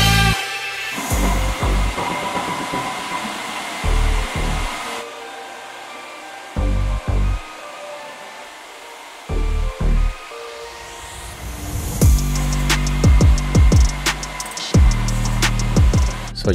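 Background music with a bass line, over the steady hissing run of a floor grinder and its dust-extraction vacuum grinding marble with 40-grit diamonds.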